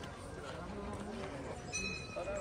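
Background chatter of passers-by talking, with a short high steady tone near the end.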